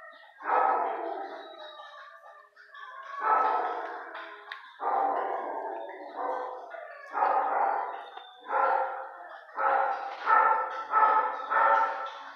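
Dog barking repeatedly, the barks echoing in a concrete-block shelter kennel and coming closer together near the end.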